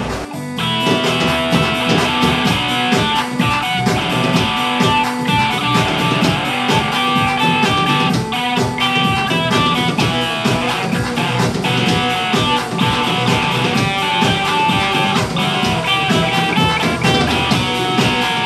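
Rock band music with electric guitar over a steady beat, starting about half a second in.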